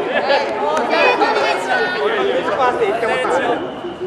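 A group of people chattering and calling out at once, many voices overlapping with no single voice clear.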